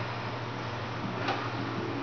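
Elliptical trainer in use: a steady whir over a constant low hum, with a single sharp click a little past halfway.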